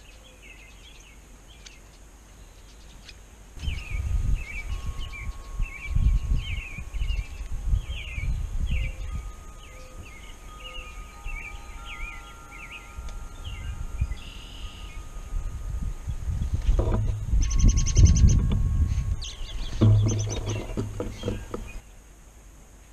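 Small wild birds chirping in quick repeated short calls around a backyard feeder, over bouts of low rumbling noise that start suddenly a few seconds in and come and go. Near the end comes a louder stretch with a fast rattle of clicks and then a brief low buzz.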